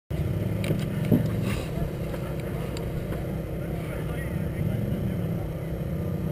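Ski-Doo Mach 1 700 twin two-stroke snowmobile engine idling steadily, heard from the rider's helmet.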